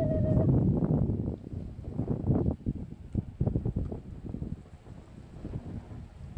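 Wind buffeting the phone's microphone in irregular gusts, a low rumble that is strongest in the first couple of seconds and eases off after that.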